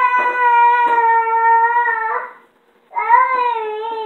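A young child singing long held notes: one note lasting about two seconds, then a short break, then another held note that wavers a little in pitch.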